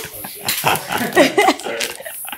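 Hearty human laughter in repeated short bursts.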